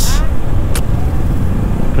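Steady low rumble of wind and engine noise from a Honda motorcycle being ridden, heard on the rider's camera microphone. A short hiss comes right at the start and a sharp click a little under a second in.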